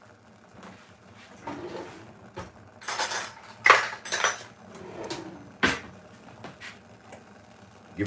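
A metal spoon and kitchen utensils clinking and knocking, with a few sharp clinks from about the middle of the stretch onward.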